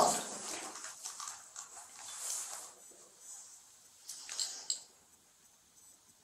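Faint rustling of clothing as a seated man shifts and folds his arms, with one short, louder rustle about four seconds in, then near silence in a small, quiet room.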